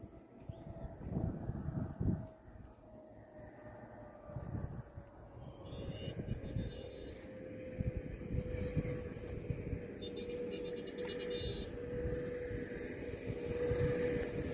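A vehicle engine's steady drone that sinks slightly in pitch and then holds, over a rough low rumble of wind and road noise.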